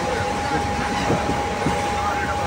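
A train running at speed, heard from aboard: a steady rumble of wheels on rails with a steady whine running through it.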